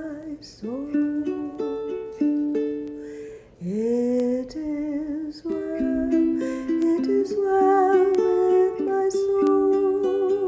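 Ukulele playing slow hymn chords under a woman's singing voice, which slides up into long held notes and wavers on the sustained notes in the second half.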